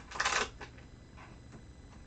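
A short crackle about a quarter second in as a rubber cling stamp is peeled off its clear plastic storage sheet, then faint handling noise.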